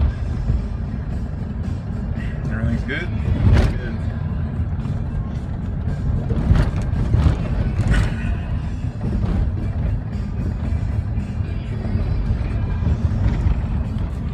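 Steady road and engine rumble inside a moving minivan's cabin, with a few brief knocks from bumps in the road.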